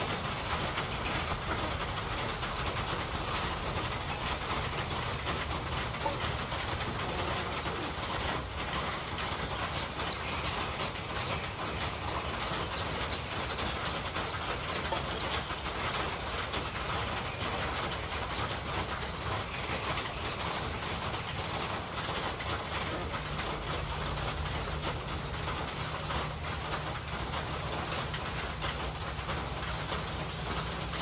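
Steady outdoor noise like a rushing hiss, with a run of faint high chirps about ten seconds in and a few more later. A low hum joins in during the last third.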